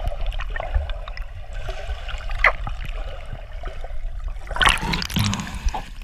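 Pool water heard with the camera's microphone underwater, muffled through its waterproof housing: a steady gurgling wash with small clicks. About five seconds in, a louder splash as the camera breaks the surface.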